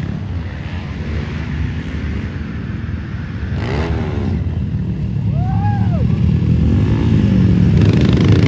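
Several motocross dirt bikes racing along the track and over a jump, their engines revving up and down in pitch and growing steadily louder as they come closer.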